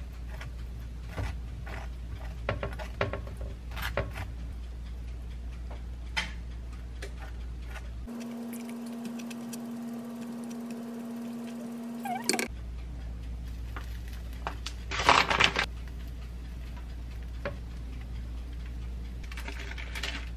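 A metal knife scraping and tapping as basil pesto is spread on toast in a frying pan, small scrapes and clicks over a low steady hum. The hum drops out for a few seconds in the middle, and a louder burst of noise comes about fifteen seconds in.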